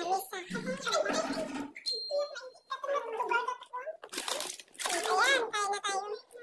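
Indistinct voices talking in a room, a child's voice possibly among them, with brief noisy bursts between the words.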